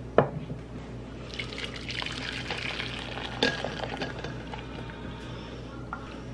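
A drinking glass knocks sharply onto a wooden tabletop, then homemade vegetable dye pours for about three seconds, with a second glass knock partway through.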